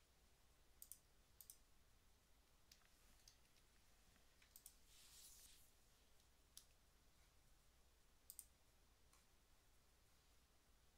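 Near silence with a faint room hum, broken by several soft computer-mouse clicks, some in quick pairs (button press and release), plus a brief soft hiss about five seconds in.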